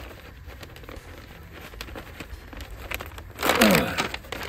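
Paper rustling and crinkling as a large paper pad is handled, then a sheet torn off the pad with a louder rip near the end.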